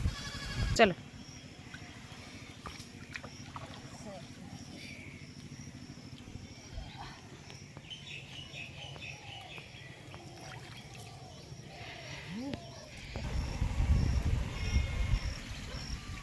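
Quiet outdoor ambience with faint distant calls, then gusty wind rumbling on the microphone for about two seconds near the end.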